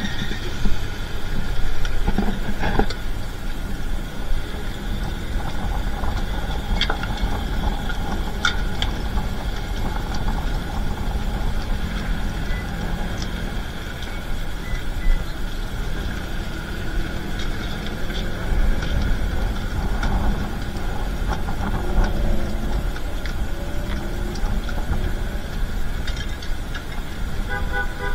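Steady city road traffic: car engines running and vehicles moving past on a busy street, a continuous rumble with faint steady whining tones over it.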